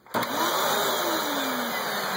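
Bagless upright vacuum cleaner (Hoover WindTunnel) switched on just after the start. Its motor comes up to a loud, steady rushing run, with a whine that rises briefly and then slowly sags.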